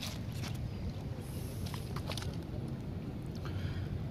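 Faint outdoor background noise: a steady low rumble with a few light ticks and a brief soft hiss about a second in.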